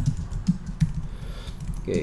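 Typing on a computer keyboard: a scattering of quick, irregular key clicks.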